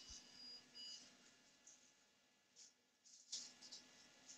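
Near silence: room tone with a couple of faint short electronic beeps in the first second and a soft brief rustle a little past three seconds in.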